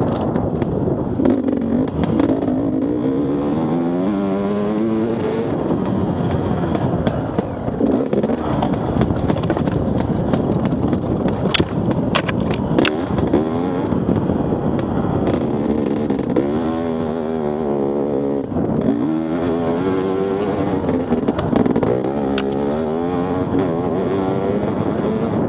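Enduro dirt bike engine under way, its pitch climbing several times and falling back as the rider accelerates and eases off over rough ground, with a few sharp knocks about halfway through.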